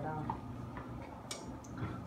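Plastic spoon stirring spaghetti and meat sauce in a stainless steel pot, with two light clicks against the pot about a second and a half in.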